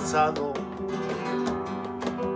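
Flamenco-style acoustic guitar music, strummed and plucked, with a voice singing a phrase in the first half-second.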